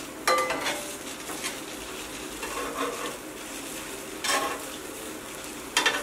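Vegetables and chiles de árbol sizzling steadily on a hot comal (griddle), with three sharp clinks and scrapes of a utensil on the metal as the toasted chiles are turned and lifted off: one ringing just after the start, one about four seconds in, one near the end.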